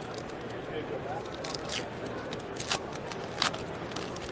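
A trading-card pack's wrapper being torn open by hand, giving a few short sharp crackles over steady background chatter.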